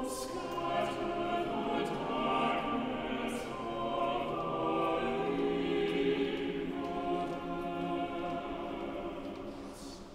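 Cathedral choir singing, with long held notes sounding in a large stone cathedral.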